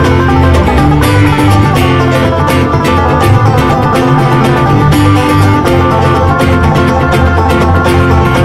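A live bluegrass string band playing an instrumental passage: fast picked banjo over acoustic guitar and a steady bass line.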